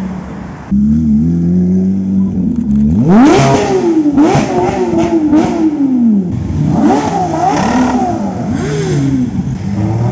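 Sports car engines revving and accelerating hard. A steady engine note runs for the first few seconds, then the pitch climbs sharply about three seconds in and rises and falls several times through gear changes and throttle blips.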